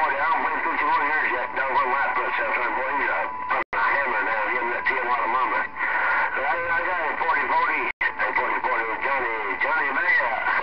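CB radio chatter from a Galaxy radio's speaker: voices too garbled to make out, with steady tones running under them. The signal cuts out completely for an instant twice, a few seconds in and again near the end.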